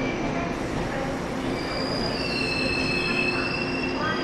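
A four-car EMU500 electric multiple unit rolling slowly into the platform, its running noise steady, with thin high-pitched squeals from its steel wheels that come in and fade over the rumble as it slows.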